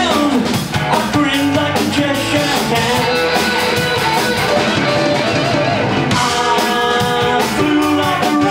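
Live psychedelic rock band playing: electric guitars, bass guitar and drum kit.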